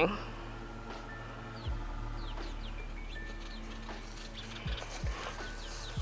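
Small birds chirping now and then, in short falling chirps, over a steady low hum. A few soft thuds come from things being handled, one early and two near the end.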